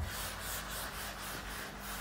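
Blackboard duster rubbing chalk writing off a blackboard in quick back-and-forth strokes, about three a second, starting suddenly.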